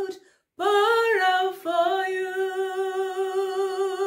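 A woman singing a communion hymn unaccompanied, holding long notes with vibrato. She breaks off briefly just after the start, comes back on a higher note that steps down again, then holds one long steady note.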